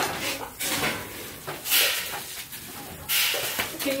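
Dry animal feed being scooped out of a feed bag or bin, heard as three short rustling, pouring bursts.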